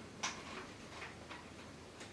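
Paintbrush dabbing acrylic paint onto a large stretched canvas: a few soft taps at uneven spacing.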